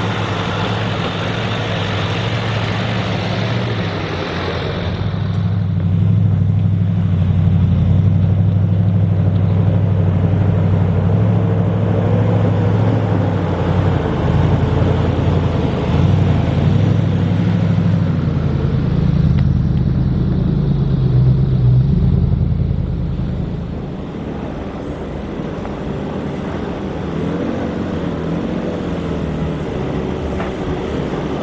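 Four-wheel drives climbing a gravel track one after another, their engines pulling steadily under load. The loudest stretch, through the middle, is a Nissan Patrol Y62's V8 drawing close and passing. Its drone drops back about three-quarters of the way through.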